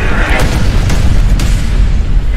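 Loud deep booming rumble of an explosion sound effect, with music, accompanying an animated logo sting.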